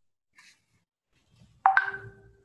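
A short electronic chime about a second and a half in: a sharp start, then a few clear ringing notes that fade out.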